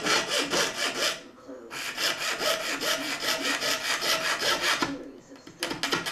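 Fine drill bit in a hand pin vise twisted back and forth, drilling a small hole through a thin throwbar strip for a hinged switch point's pivot spike: quick scraping strokes, about six a second. The strokes stop briefly about a second in, run on until near the end, then come only now and then.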